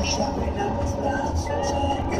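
Steady road noise inside a vehicle moving at highway speed: a low rumble of tyres and engine.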